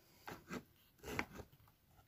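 Faint rubbing and scraping handling noise as the camera is straightened, in four short bursts.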